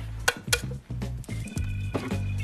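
Background music with a steady low bass line. In the first second there are a few sharp taps: a hard-boiled egg's shell being cracked against a glass jar.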